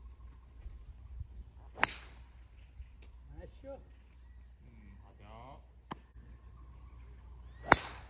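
Two golf drives off the tee: a driver head strikes the ball with a sharp crack about two seconds in, and a second, louder crack comes near the end. Faint voices sound in between.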